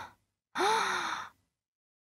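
A woman's sigh: a quick breath at the start, then about half a second in a breathy, lightly voiced exhale that dips in pitch and lasts under a second.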